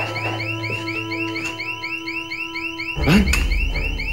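Security alarm sounding a rapid repeating warble, about five chirps a second, with low held music tones under it that stop about three seconds in, when a man shouts.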